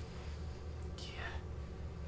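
A quiet pause in conversation: a low, steady room hum, with a soft, breathy whispered 'yeah' about a second in.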